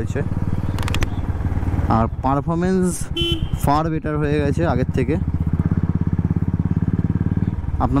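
Royal Enfield Classic 350's single-cylinder engine thumping steadily through its exhaust while riding, a deep note with a lot of bass. It is heard most clearly in the second half, as a rapid, even beat.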